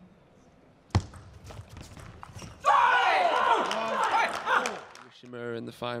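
A table tennis ball struck sharply about a second in, followed by a few fainter hits, then a player's loud, drawn-out shout on winning the point. A short, low voice follows near the end.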